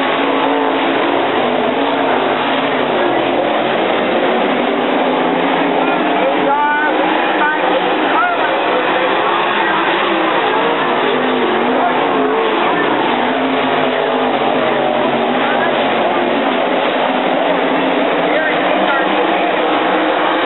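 Winged dirt-track sprint car engines running on the track, loud and steady, with crowd voices mixed in underneath.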